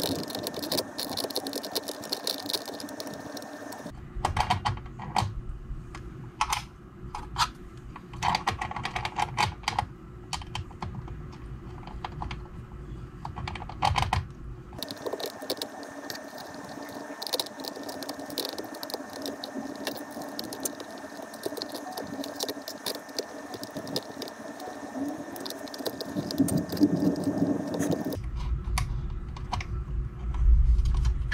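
Light clicks and taps of small screws, a hex key and 3D-printed plastic bed pulls being handled and fastened against an aluminium 3D-printer bed, over a faint steady background hum.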